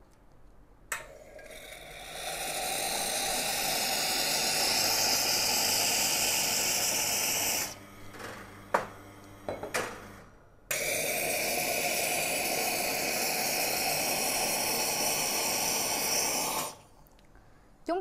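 Espresso machine steam wand hissing into a stainless jug of water, in two runs of about six seconds each. The first run builds up over a second or two; the second starts abruptly. A few metallic clinks of the jug come in the gap between them.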